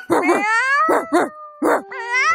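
A cartoon dog barking several times in quick succession, over a long, gently falling drawn-out cry.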